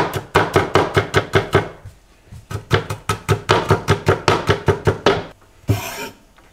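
Chef's knife chopping quickly on a cutting board, about six even strokes a second, in two runs with a short pause about two seconds in.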